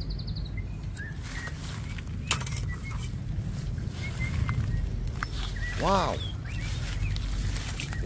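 Short, faint bird chirps scattered over a steady low rumble, with one sharp click a couple of seconds in.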